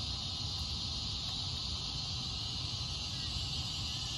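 Steady outdoor ambience: a constant high-pitched insect chorus, with a low rumble beneath.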